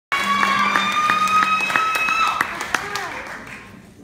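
Audience clapping and cheering with a long, high, held voice over it, and one pair of hands clapping close by about three times a second; it dies away over the last second.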